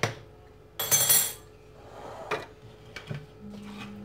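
A kitchen utensil scraping and knocking against a frying pan: one short scrape about a second in, then a few light knocks. A faint low steady hum comes in near the end.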